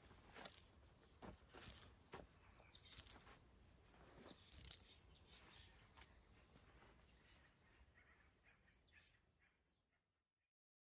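Faint outdoor ambience of small birds chirping in short descending calls, with scattered soft scuffs and taps of feet moving on a dirt yard, the sharpest a click about half a second in. The sound fades away near the end.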